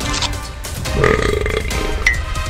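A cartoon burp sound effect about a second in, lasting under a second, over background music.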